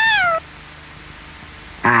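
A cat meows once at the very start, a short call that rises and then falls in pitch. Faint hiss follows, and a man's voice begins just before the end.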